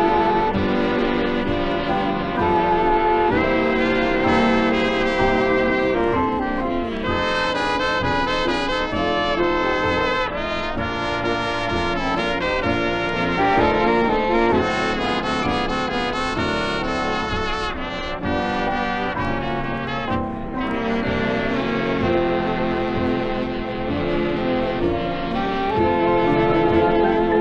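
Big band dance orchestra playing an instrumental passage, the brass section of trumpets and trombones to the fore over a steady rhythm-section beat.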